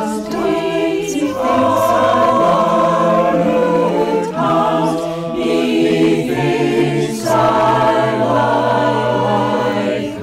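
A choir singing slowly in sustained chords that change every second or two, over a low bass line.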